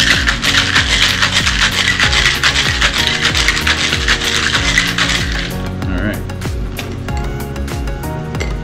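Ice rattling hard inside a Boston cocktail shaker (metal tin and mixing glass) as a margarita is shaken, a fast continuous rattle that stops about five and a half seconds in. Background music plays throughout.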